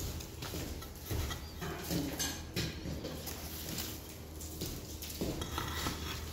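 Concrete tiles knocking and scraping against one another as they are handled over their cardboard box: a few light clinks, bunched in the first half and again near the end.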